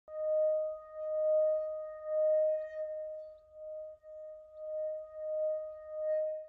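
Metal singing bowl struck once, ringing on in one steady tone that swells and fades about once a second.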